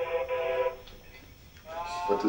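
A drawn-out, pitched voice-like call held steady for under a second, then a second call rising in pitch near the end.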